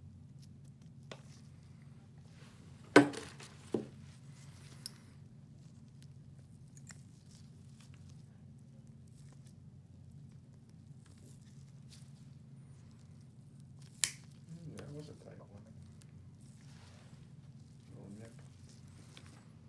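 Nail nippers cutting through a thick fungal toenail: a loud sharp snap about three seconds in, two lighter clips within the next two seconds, and another loud snap about fourteen seconds in. A steady low hum runs underneath.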